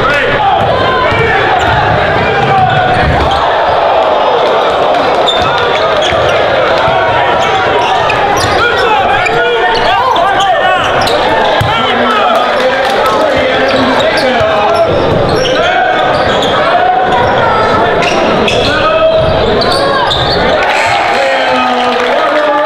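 Live basketball game sound in a gym: a basketball bouncing on the hardwood court, heard through a continuous hubbub of spectators' chatter.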